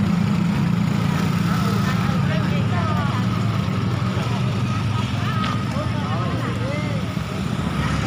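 A motor running steadily with a low hum, under several people talking in the background.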